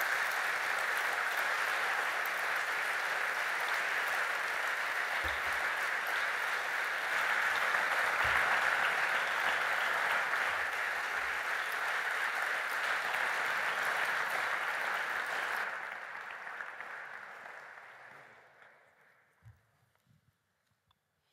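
Audience applauding steadily, thinning out and dying away over the last few seconds.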